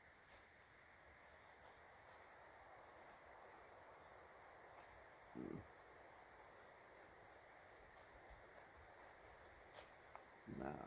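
Faint, repeated scraping of the Boker Plus Bushcraft Kormoran's knife blade shaving thin curls along a stick to make a feather stick. A brief, louder low sound comes just past halfway.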